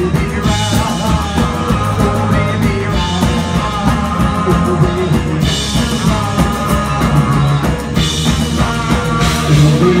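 A live rock and roll band playing an instrumental stretch near the end of a song: drum kit with cymbals, electric guitar, bass and saxophone.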